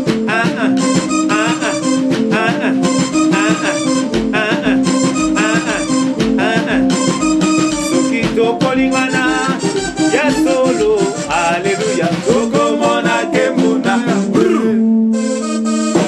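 Live band playing upbeat Congolese gospel music: electric guitar lines over keyboard chords with a steady percussion beat. About fifteen seconds in, the music settles on a held chord.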